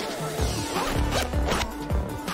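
Zipper on a small bag being pulled open, a rasping zip, over background music.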